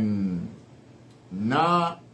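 A man's voice drawing out two long chanted vowel sounds. The first slides down in pitch, and the second, about a second and a half in, rises and then holds.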